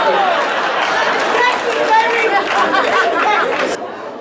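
Comedy club audience reacting to a joke: many voices talking and laughing over each other, cutting off suddenly near the end.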